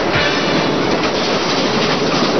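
Steam locomotive running through a tunnel: a dense, steady rush of exhaust and running noise at an even loudness.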